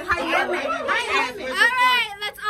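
Only speech: several people chattering over one another.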